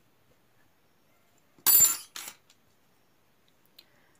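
A metal crochet hook set down on the table: one bright metallic clink about two seconds in, followed by a smaller knock. Otherwise near silence.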